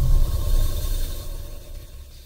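A low rumble that fades away over about two seconds, the tail of a whoosh-and-rumble transition sound effect between sections.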